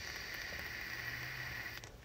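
A long, hissing breath out, a sigh close to a phone microphone, lasting nearly two seconds and stopping shortly before the end.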